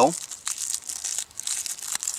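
Small folded sheets of aluminum foil crinkling irregularly as they are handled and begun to be unfolded.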